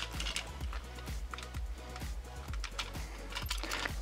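Irregular light plastic clicks and taps as a Beyblade launcher grip is handled and snapped back onto the launcher, with one sharper click at the start. Background music plays underneath.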